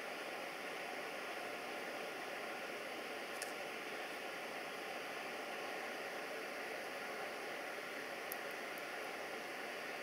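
Steady, even background hiss with no distinct event, with a faint click about three and a half seconds in and another near eight seconds.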